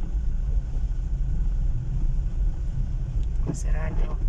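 Steady low rumble of a car's engine and tyres heard from inside the cabin as it rolls slowly along a wet street. A voice says a word near the end.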